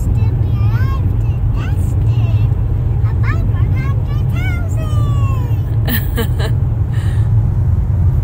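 Steady low road and engine rumble inside a moving car's cabin. Over it, a high voice slides up and down through the first few seconds, and a few sharp clicks come about six seconds in.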